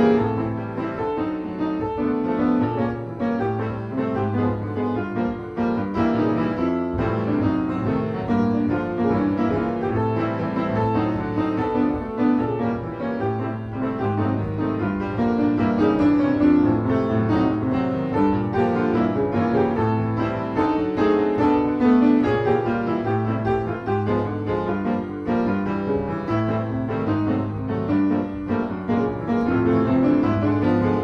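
Solo acoustic piano improvising, with chords over a recurring bass pattern, played without pause.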